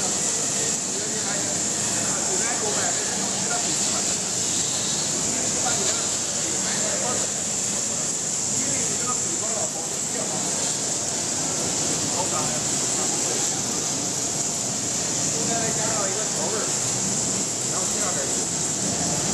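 Steady running noise of a multi-layer mesh-belt dryer, with a constant high hiss, over indistinct voices.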